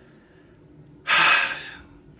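A man's heavy sigh: one loud breath out, about a second in, lasting just under a second and fading away.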